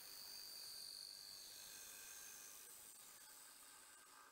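A bowl gouge cutting the inside of a beech bowl spinning on a wood lathe, throwing shavings. It makes a steady high-pitched hiss with a thin whistle, easing off slightly toward the end.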